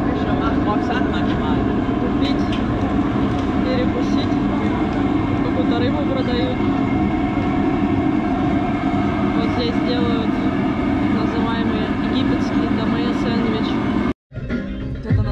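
Steady road and engine noise of a moving car, with indistinct voices talking through it.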